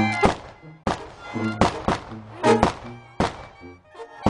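Live festive band music with an accordion: sharp, loud drum beats in an uneven rhythm, about seven in four seconds, with short held bass and accordion notes between them.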